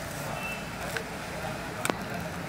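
Handling noise as a small mobile phone and its clear plastic wrapping are taken out of the box, with a sharp click near the end, over a steady background of faint voices.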